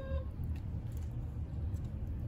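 Spider tortoises biting and chewing a prickly pear cactus pad: a few faint, scattered crunching clicks over a low, steady background rumble.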